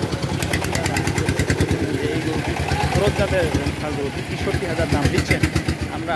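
A small engine idling with a rapid, even putter, under voices of people talking.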